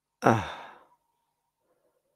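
A single short sigh voiced as "uh", falling in pitch and lasting about half a second.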